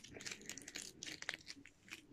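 Faint, scattered crinkles and small cracks from unwrapping and opening a Kinder Surprise chocolate egg: foil wrapper and chocolate shell being handled.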